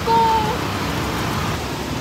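Steady street traffic noise, an even rush without distinct events.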